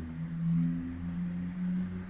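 A low, steady hum made of a few sustained low tones. One tone drops out and returns partway through.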